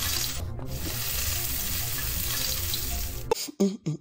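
Tap water running into a kitchen sink, a steady rush that cuts off sharply a little over three seconds in, followed by a few brief broken sounds.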